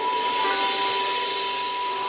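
A shakuhachi (Japanese bamboo flute) holds one long, very breathy note over a soft, sustained lower accompaniment.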